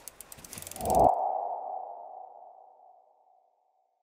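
Logo-animation sound effect: a quick run of soft ticks, then about a second in a single ringing tone that fades away over about two seconds.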